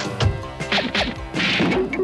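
Cartoon slapstick sound effects of a car being piled into and bouncing up: several quick whacks and knocks, then a noisy crash-like burst about halfway through, over background music.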